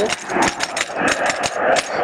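Unpitched accompaniment filling a break between sung lines of a Hindi devotional song: a steady rough hiss with many irregular clicks and no clear melody.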